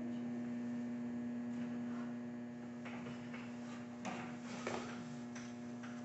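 Steady low electrical hum, with a few faint soft knocks and scuffs about halfway through.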